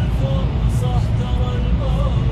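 Steady low rumble of a Kia car cruising in 6th gear at low revs, heard inside the cabin, with a song with a wavering sung melody playing over it.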